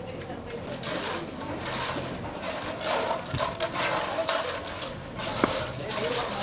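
Hand tools scraping and raking through wet concrete in irregular strokes, starting about a second in, over a faint steady low hum.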